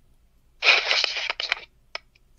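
A burst of crackling static on a phone call, about a second long, then a few sharp clicks near the end: the phone connection glitching.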